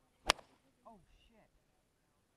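A golf driver striking a teed golf ball: one sharp crack about a third of a second in.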